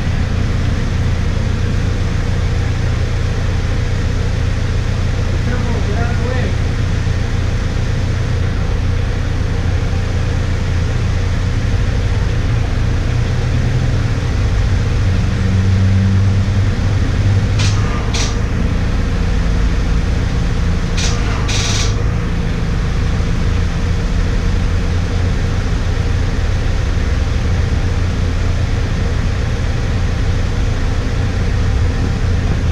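A car engine idling steadily with a low, even rumble. A few short sharp clicks come about two-thirds of the way through.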